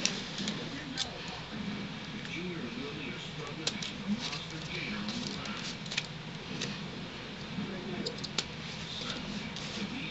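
Card stock and ribbon being handled and pressed down on a craft table: scattered light taps and rustles.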